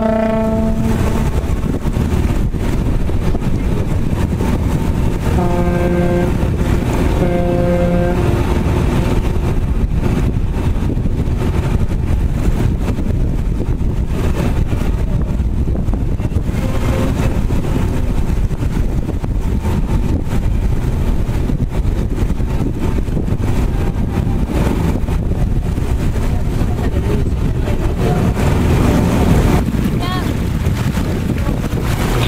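Steady low rumble of a boat under way with wind on the microphone. Over it, horn blasts: one ending about a second in, then two shorter, lower blasts about two seconds apart, around six and eight seconds in.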